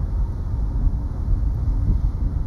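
Wind buffeting the microphone: a steady, uneven low rumble with no other distinct sound.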